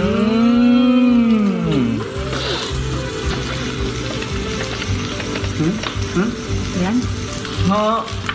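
A drawn-out 'mmm' from a voice, its pitch rising then falling over about two seconds. Short bits of talk follow. Under it run soft background music and a steady frying sizzle.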